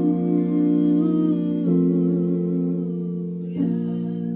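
Slow band music: held, sustained keyboard chords that change about halfway through and again near the end, with a soft wavering melody line above them.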